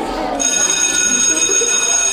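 A bell ringing steadily, starting about half a second in and held for about two seconds, with faint voices underneath.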